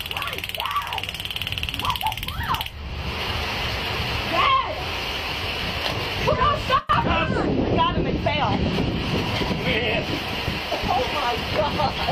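Indistinct voices during a struggle on the ground, over a steady rush of noise. The audio cuts out for a moment about seven seconds in.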